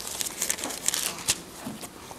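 Pages of a Bible being turned by hand: several short, crisp rustles of thin paper.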